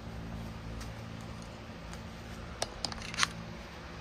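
Handheld camera being picked up and moved: a few sharp handling clicks and rustles, the strongest cluster near the end, over a steady low hum.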